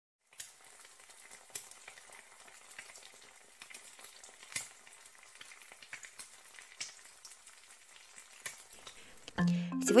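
Food sizzling as it fries: a quiet, steady sizzle with scattered crackles and pops, which stops about nine seconds in.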